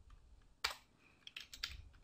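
Faint keystrokes on a computer keyboard: a single key, then a quick run of several keys about a second and a half in.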